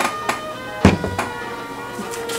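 Soft background music of held, sustained notes, with a few sharp knocks and clicks of objects being handled; the loudest knock comes just under a second in.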